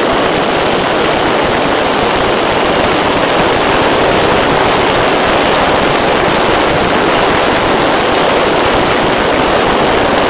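Steady, loud rushing noise from a flying craft carrying a phone: airflow and motor heard on the phone's own microphone, with a faint high whine held steady.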